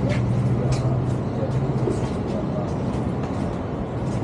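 A passenger van's engine running at low speed as it creeps past close by: a steady low hum over city street noise, strongest in the first half.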